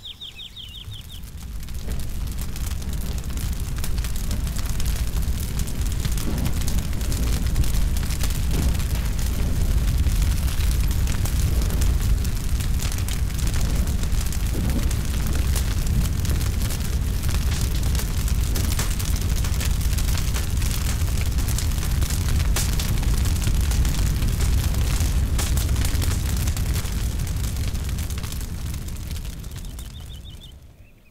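A large fire burning, a deep steady rumble with dense constant crackling, fading in over the first couple of seconds and fading out near the end.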